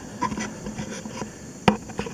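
Hands handling a model airplane fuselage close to the microphone: light rubbing and scraping, with a few small ticks and one sharp click near the end.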